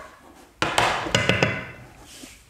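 Stainless steel frying pan and wooden spoon clattering: a run of quick knocks with a short metallic ring. It starts about half a second in and lasts about a second.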